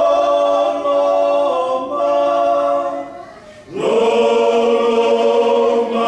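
Small men's choir singing a hymn a cappella in held chords of close harmony. The phrase fades out a little past three seconds in, and a new phrase starts loudly about half a second later.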